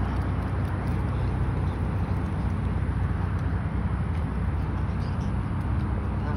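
Steady low hum of an idling car engine, with an even background hiss.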